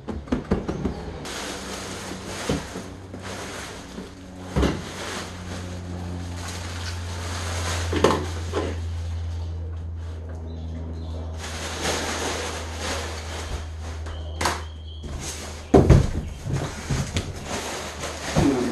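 Knocks and clatter as an aftermarket racing bucket seat is handled and set down on a folding table, with a sharp cluster of knocks near the end. Underneath is a steady low hum and a rushing noise that comes and goes in two long stretches.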